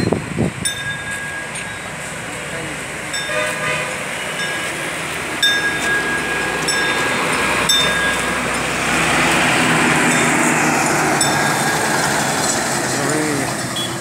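Busy road traffic with engines and short horn toots. A louder rushing noise rises from about nine seconds in, as of a vehicle passing close.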